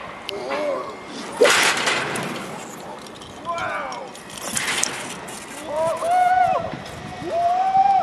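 A rope jumper's wordless yells during the fall and swing on the rope: short cries early, then two long calls near the end, each rising and falling in pitch. About 1.5 s and 4.7 s in, bursts of wind rush over the helmet microphone.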